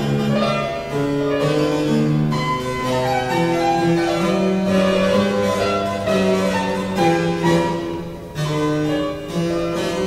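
Harpsichord and fortepiano playing together in a duet, a melody moving note by note over lower held notes.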